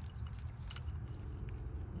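Faint, scattered light clicks of a steel double-row timing chain being handled on its sprocket by a gloved hand, over a low steady hum.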